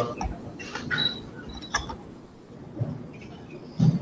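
Scattered creaks and clicks, with a heavier low thump near the end.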